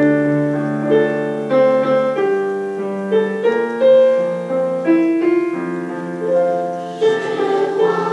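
Piano playing a melody of held notes. About seven seconds in, a class of children starts singing along with it.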